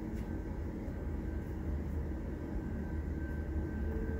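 Steady low machine hum with faint, thin whining tones from the clay printer's stepper motors as the print head starts to move.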